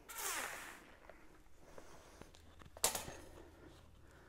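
Handling noise as a bicycle wheel is put down and the turntable is stepped off: a brief rushing swish in the first second, then one sharp knock a little before three seconds in.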